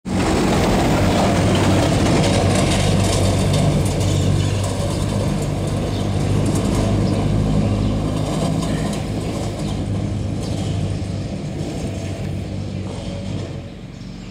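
A motor vehicle's engine running steadily close by, its low hum easing off over the last few seconds.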